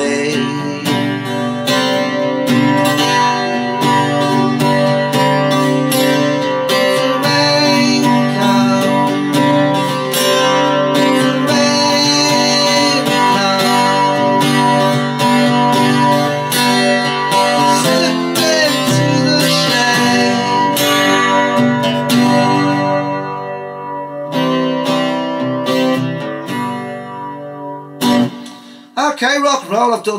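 Acoustic guitar strummed in full chords, played loud and steady, then thinning out and letting the last chords ring down to a stop near the end.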